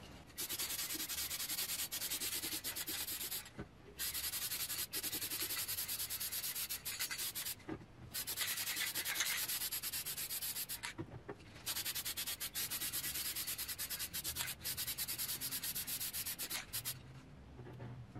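Aerosol spray can hissing in four long bursts of three to five seconds each, with short pauses between, as a full coat of paint is sprayed on.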